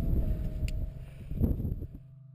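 Wind buffeting an action camera's microphone during a rock climb, with a sharp metallic click of climbing gear about a third of the way in and a louder gust about one and a half seconds in; the noise drops away suddenly near the end.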